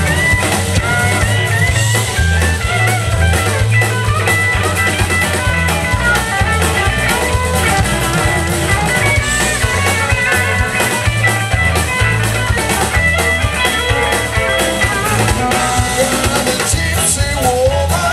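Live blues band playing: several electric guitars over bass, keyboard and drums, loud and continuous.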